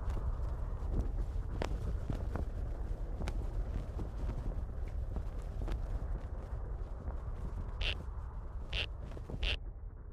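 Low, steady rumbling background noise with scattered faint clicks, and three short, brighter hits close together near the end.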